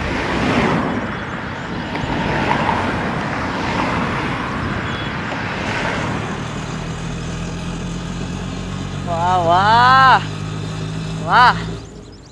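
Busy city street traffic noise, then a small goods truck's engine running steadily from about halfway through. Near the end a loud wavering shout rises and falls for about a second, followed by a shorter one.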